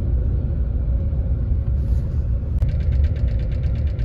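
Steady low engine and road rumble inside a coach bus cabin. A brief fast, light ticking rattle comes in about two-thirds of the way through.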